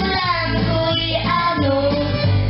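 Two girls singing a folk song into microphones, with a steady low accompaniment underneath.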